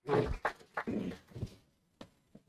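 Rubbing and knocking noises on a worn microphone as it is handled and adjusted, in a few short irregular bursts over the first second and a half.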